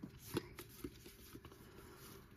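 Baseball trading cards being flipped one at a time through a hand-held stack, faint card-on-card slides with a series of light ticks.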